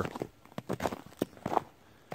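Footsteps on a snowy woodland path: a few separate steps, roughly half a second apart.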